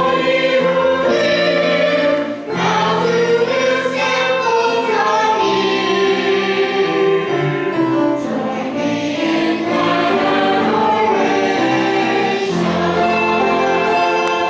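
Church choir singing an anthem, many voices together in sustained, shifting harmony.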